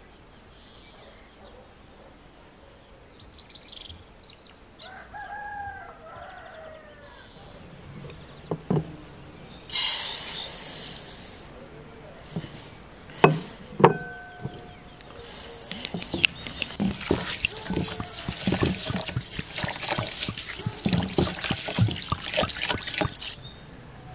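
A rooster crows faintly about five seconds in. Near ten seconds water rushes into an enamel basin, a ceramic plate knocks twice against it with a short ring, and then hands swish and splash in the water for several seconds.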